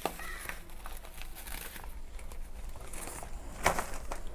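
Plastic carry bags and a small plastic packet rustling and crinkling as they are handled, with a brief louder rustle near the end.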